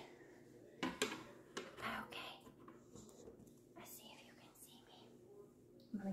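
Handling noise of a phone camera being turned and set in place: a couple of sharp knocks about a second in, then soft rustles and small knocks, with faint low murmuring.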